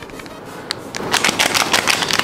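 Plastic packaging crinkling as it is handled, a quick run of sharp crackles starting about halfway through.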